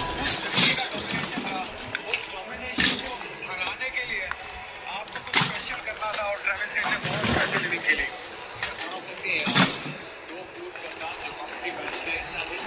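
Hard plastic baby toys clattering and knocking against each other and a plastic storage box as they are handled and rummaged through. Four sharper knocks stand out among the lighter rattling.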